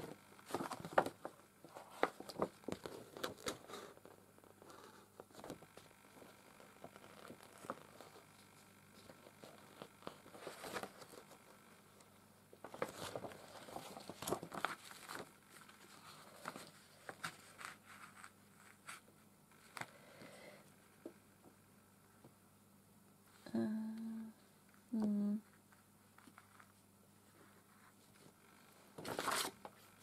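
Hands working yarn through felt: irregular rustling, scratchy pulls and small clicks as the yarn is drawn through and the felt is handled. About two-thirds through come two short hummed tones, and near the end a louder burst of handling noise.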